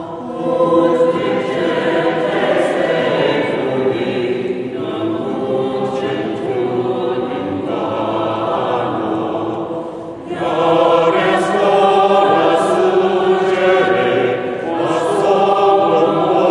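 Mixed choir of men and women singing in long held phrases; the voices drop out briefly about ten seconds in and come back louder.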